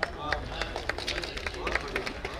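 Scattered, irregular clapping from a few people in a small audience after a short poem, with faint murmured voices behind it.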